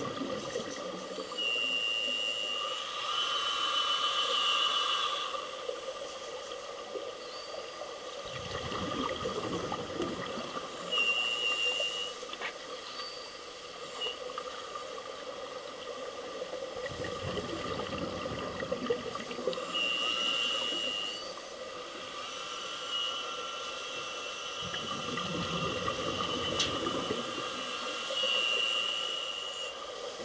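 Scuba breathing heard underwater: regulator inhalations with a short whistling hiss, alternating with three rumbling bursts of exhaled bubbles several seconds apart.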